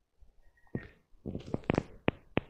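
Handful of compost being crumbled over a terracotta pot: a few short, quiet rustles and clicks, starting about a second in.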